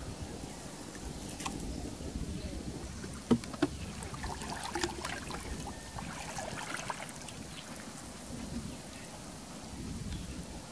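Water sloshing and splashing as a person wades through shallow water handling a hoop net, with two sharp knocks in quick succession about a third of the way in.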